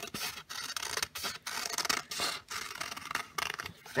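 Scissors cutting a sheet of paper along a curved line: a run of short snips, a few each second, unevenly spaced.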